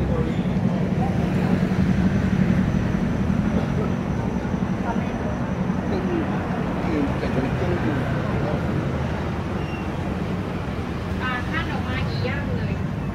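Busy street ambience: a steady low mechanical hum of traffic and engines under indistinct chatter of passers-by, with a few short high chirps near the end.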